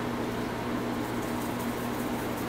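Steady background hiss with a low, even hum underneath; no distinct event stands out.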